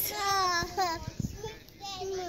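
A young child's high voice in a drawn-out, sing-song call during the first second, with a shorter call beginning near the end.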